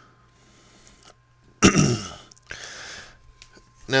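A man clearing his throat: one loud rough burst about one and a half seconds in, followed by a softer raspy breath.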